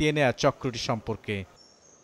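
A man speaking breaks off after about a second and a half, then faint high insect chirping near the end.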